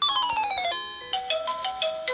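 Children's toy learning laptop playing an electronic beeping jingle: a quick falling run of beeps, then a short bleeping tune, as its letter game moves on to the next letter.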